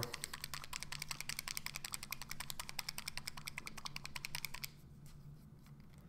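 Rapid, evenly spaced clicking, about nine clicks a second, which stops about three-quarters of the way through.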